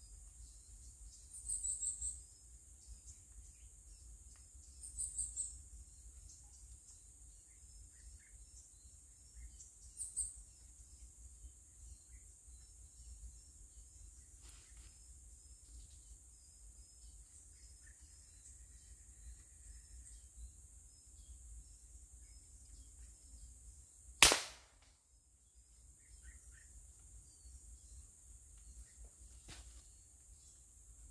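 A single air rifle shot about 24 seconds in, one sharp crack that is by far the loudest sound. Before it, three faint high chirps in the first ten seconds against a quiet background.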